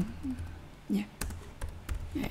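Computer keyboard typing: a handful of separate keystrokes, spaced unevenly.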